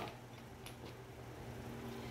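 Quiet handling of quilted fabric and bias tape over a faint low steady hum, with a light tick about two-thirds of a second in.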